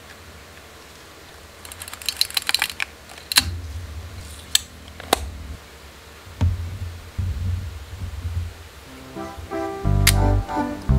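Konica L 35mm film camera's mechanism clicking while film is loaded: a quick run of small ratcheting clicks, then three sharp single clicks, with low bumps of the body being handled. Music comes in near the end.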